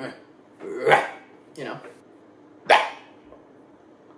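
A man's loud, abrupt burp, short and harsh, 'like a scream'.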